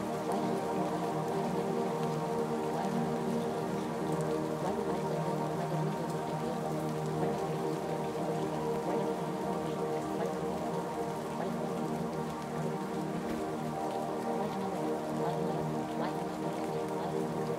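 Sustained ambient music tones held steady under an even rain sound, with no beat or breaks.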